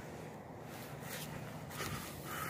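Faint rustling and shuffling of footsteps on garden soil and mulch, over a faint steady low hum.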